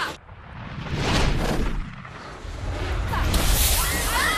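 A loud, low rumbling blast, like an explosion, as a car is launched into the air. It swells about half a second in, eases, then rises again with a hiss near the end, where screams break out.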